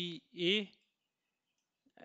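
A man's voice speaking a short word, then about a second of near silence before he speaks again at the end.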